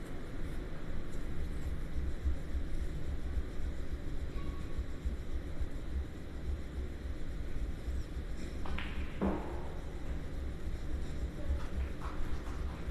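Steady low background rumble of a quiet room, with two sharp clicks close together about nine seconds in.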